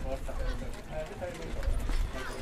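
Hoofbeats of a grey harness horse stepping past on turf as it pulls a sulky, with people talking in the background.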